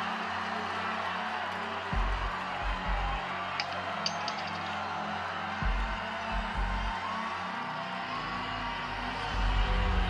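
Tense television suspense music with a few deep bass hits, over a steady background of studio audience noise, swelling in the low end near the end.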